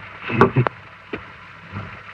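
A short voice sound about half a second in, then a faint click, over the steady hiss of an early sound-film track.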